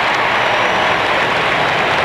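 Large arena crowd applauding, a steady dense wash of clapping.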